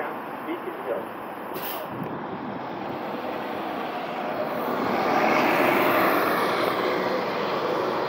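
A 2020 Nova Bus LFS diesel city bus pulling away from a station stop. Its engine noise swells to a peak about five to six seconds in and then eases, with a brief hiss near two seconds in.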